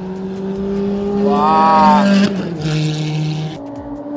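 Supercar engines running at low, steady revs as the cars roll slowly down the pit lane. The engine note steps down to a lower pitch about two and a half seconds in.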